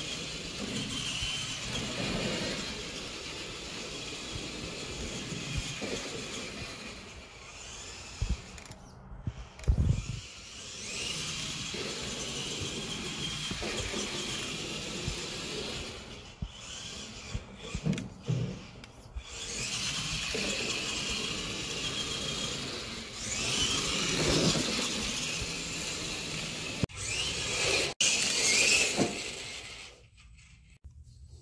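GMade R1 RC rock buggy driving, its electric motor and gearbox whining in spells as the throttle comes on and off, with short pauses. A couple of low thumps come around a third of the way in.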